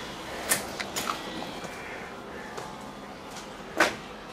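A few short, light knocks and clicks of debris and objects being disturbed in a small cluttered room, the loudest just before the end.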